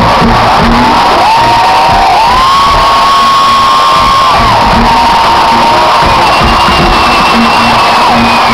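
Live pop concert music over a stadium PA, recorded from the crowd and overloaded on the recording, with the crowd cheering and long drawn-out high shouts held over it.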